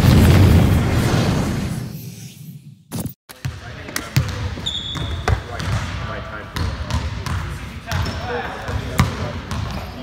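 An intro logo sting with a booming whoosh fades out over the first three seconds. After a brief gap, basketballs bounce on a hardwood gym floor in repeated sharp knocks, with players' voices.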